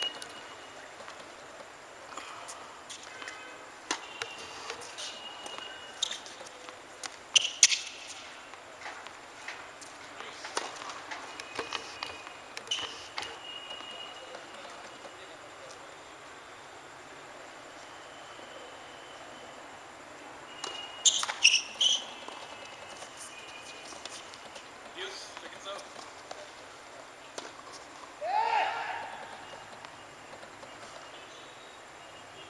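Tennis ball being struck by rackets during a rally on a hard court: a series of sharp hits, loudest in clusters about seven seconds in and about twenty-one seconds in. A short shout comes near the end.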